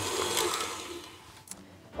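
KitchenAid Artisan stand mixer beating pâte à choux dough as the eggs go in. Its motor runs steadily, then is switched off about a second in and winds down, followed by a single click.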